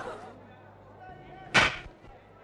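A cartoon sound effect: one short, loud swish about one and a half seconds in, during hockey play on ice.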